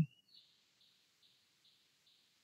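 Near silence, with only a faint high hiss.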